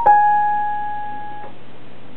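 Electronic keyboard on a piano voice: a single note is struck and held, dying away after about a second and a half. A steady low hum and hiss are left underneath.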